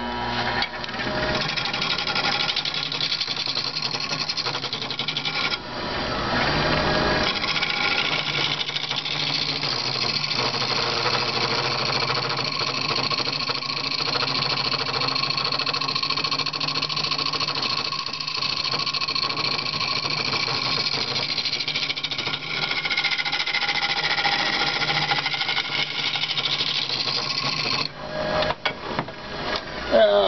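A wood lathe spins a cherry bowl while a turning tool cuts its surface, a steady scraping hiss over the lathe's hum, facing off the epoxy-filled repair. It gets louder a few seconds in and stops shortly before the end.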